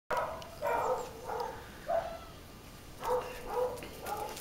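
A dog barking: four short barks in quick succession, a pause of about a second, then two more.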